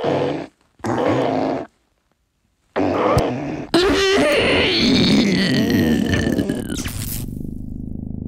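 Spooky sound effects: two short rasping bursts, a silent gap, then a longer dense rushing sound with a slowly falling whistle, which gives way to a low steady drone near the end.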